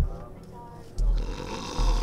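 A man snoring: low snorts at the start, about a second in and again near the end, with a hissing breath between the last two.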